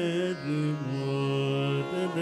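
Carnatic vocal music: a male singer holds long notes that step down in pitch twice, then turn again near the end, over a steady drone.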